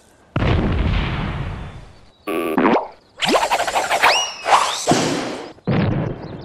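A run of cartoon slapstick sound effects: first a crash that dies away over a couple of seconds, then a boing, rising whistle-like glides, and two more short hits near the end.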